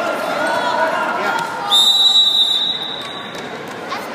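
Referee's whistle blown in one long, shrill blast of about a second and a half, starting about two seconds in, with shouting voices before it.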